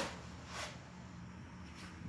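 A short knock at the very start, then a fainter one about half a second in, as packing pieces are handled and lifted out of a cardboard shipping box; otherwise faint room tone.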